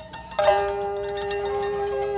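Koto and shamisen playing jiuta, Japanese traditional chamber music: plucked string notes, with a strong note struck about half a second in that rings on steadily.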